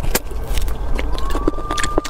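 Close-up eating sounds of beef bone marrow being bitten and sucked from the bone: a dense run of wet mouth clicks over a steady low hum. About halfway through, a steady high tone starts and holds.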